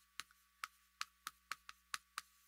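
Chalk tapping and clicking on a chalkboard as characters are written: a faint string of short, sharp ticks, several a second at uneven spacing.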